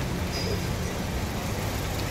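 Honda Brio's engine idling with a steady low hum.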